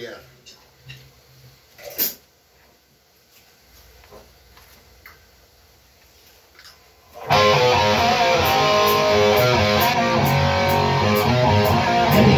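A few soft knocks in a quiet room, then about seven seconds in an electric guitar suddenly starts playing loudly as a rock band begins a song, with a steady high ticking about three times a second.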